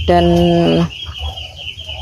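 A man's voice holding one long, flat drawn-out word at the start. Behind it runs a steady high-pitched insect drone and a low rumble.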